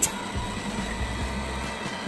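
Little Tikes STEM Jr. Tornado Tower's small motor running steadily as it spins the water in its tank into a vortex, a low hum with water swirling.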